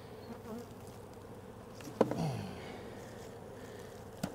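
Honey bees buzzing steadily around an opened hive. About two seconds in, a single sharp knock as wooden hive equipment is set down.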